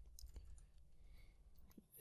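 Near silence with a few faint, scattered computer keyboard keystrokes.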